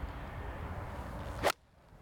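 Steady low rumble of wind on the microphone, then a golf club strikes the ball off the tee in one sharp, loud crack about one and a half seconds in, after which the wind noise cuts out abruptly.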